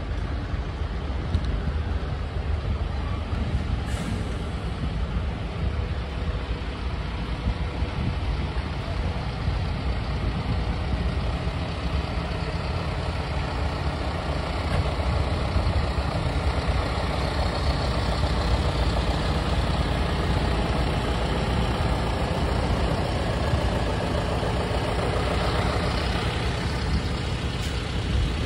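Diesel engines of several farm tractors idling together, a steady low rumble that grows slightly louder in the second half.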